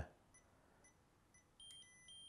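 Faint electronic beeping from the MEET MP-MFT20 multifunction tester while its 500 V insulation test runs: soft short blips about twice a second, then two short high beeps near the end.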